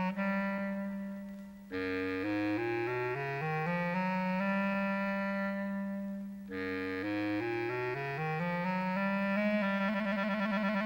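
Background music: a woodwind melody over a held low note, in phrases of notes that climb step by step. The music fades briefly and a new phrase starts sharply twice, about two seconds in and again about six and a half seconds in.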